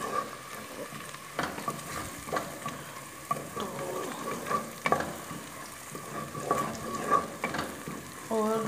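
Chopped onions and vegetables frying in oil in a steel pot, sizzling steadily, while a spoon is stirred through them, scraping against the pot several times at irregular moments.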